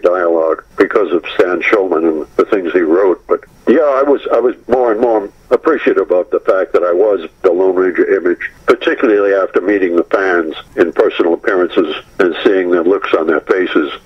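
Only speech: a man talking steadily over a narrow-sounding telephone line, with short pauses.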